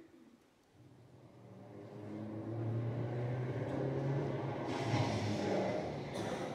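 Low engine drone played over the stage's sound system as a sound effect, fading in from near silence about a second in and growing louder, then holding steady.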